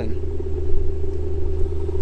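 A steady low rumble with a constant hum over it, unchanging throughout.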